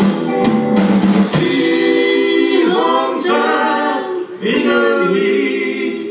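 Live rock band with electric guitars and drum kit playing, with drum and cymbal strikes in the first second or so. After that, voices sing long held notes over the band.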